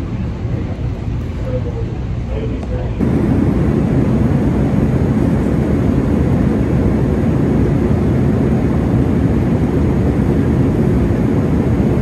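Steady airliner cabin noise in flight, the even rush of the engines and airflow heard from a passenger seat. It cuts in abruptly about three seconds in, after a quieter stretch with a faint voice in the background.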